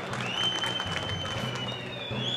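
Audience applauding with scattered hand claps, while a single high whistle holds a steady pitch over them.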